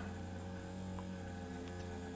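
Steady low electrical hum with evenly spaced overtones: mains hum picked up on the voice-over recording.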